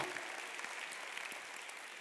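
Congregation applauding faintly and steadily in a large hall, easing off slightly toward the end.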